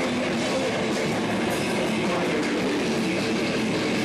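Live rock band playing loud distorted electric guitars, bass and drums in a dense, steady wall of sound.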